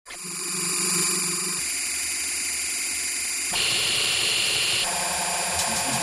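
Intro of a neurofunk drum and bass track before the beat comes in: a synthesized texture of steady high tones over hiss, shifting abruptly at about one and a half, three and a half and five seconds in.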